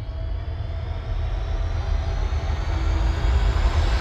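Dramatic suspense sound design: a deep rumbling drone with thin high tones that slowly rise in pitch, swelling steadily louder.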